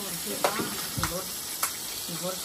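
Small fish (chimbolas) frying in hot oil in a pan, a steady sizzle, with two sharp clicks of a metal spatula against the pan, about half a second in and again past one and a half seconds.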